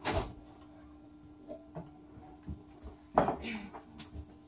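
Small handling and mouth noises from the pianist drinking from a ceramic mug and setting it back down: a short sound at the start and a louder one about three seconds in. A steady low hum runs underneath.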